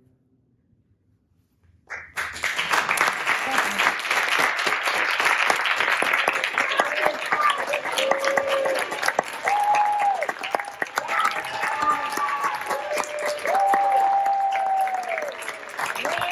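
Audience applauding, starting suddenly about two seconds in after a near-silent pause, with a few held cheers over the clapping.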